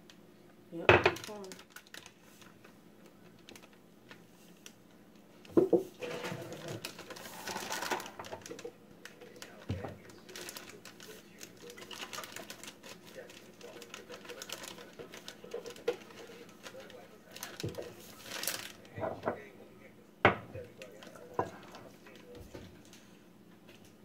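Kitchen handling noises while measuring pancake mix and milk into a glass mixing bowl: scattered clicks and knocks of containers and utensils handled on the counter, with a stretch of rustling about six to eight seconds in.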